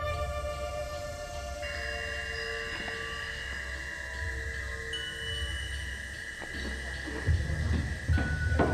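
Suspenseful background score: a sustained high held note over a low drone, with a fainter tone wavering beneath. A couple of soft knocks come near the end.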